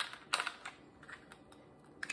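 Light plastic clicks and taps from handling a plastic diamond-painting drill storage container and funnel, the sharpest two in the first half-second, a few softer ticks after, then quiet.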